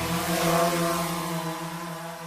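The closing of a video intro's soundtrack: a held, pitched chord carried over from the intro music, with a whoosh swelling about half a second in, then fading steadily away.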